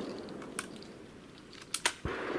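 Break-action shotgun being loaded: light handling clicks as shells go into the chambers, then two sharp metallic clicks close together near the end as the action is snapped shut.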